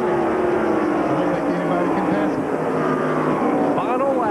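NASCAR stock car V8 engines running at speed on the track, their engine note sliding slowly down in pitch.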